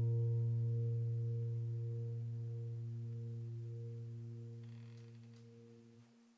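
Background piano music: a single held low chord slowly dying away to nothing.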